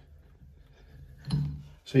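Faint handling sounds as an old thermostatic shower valve is worked out of its housing in the wall, with a short click near the end and a spoken word.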